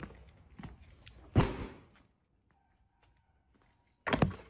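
A few faint knocks, then one loud thump about a second and a half in.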